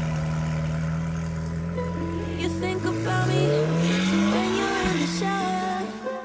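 Supercar engine running steadily, then accelerating, its note rising in pitch for about three seconds before dropping suddenly near the end. Music plays underneath.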